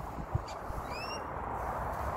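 A bird gives one short, rising whistled call about a second in, over a low rumble of camera handling while walking.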